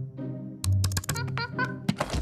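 Light background music with a quick run of computer clicks from about half a second in, as of mouse and keys being tapped at a desk.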